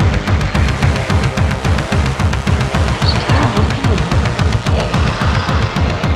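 Instrumental passage of an EBM (electronic body music) track: a steady, fast electronic beat over a pulsing synth bass line, with no vocals.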